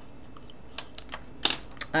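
Small plastic makeup items being handled with acrylic nails: an uneven run of about six sharp clicks and taps in the second half.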